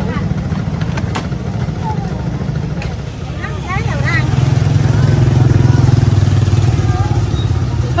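Motorbike engine running close by, getting louder about halfway through and staying loud for a few seconds before easing, with brief voices in the background.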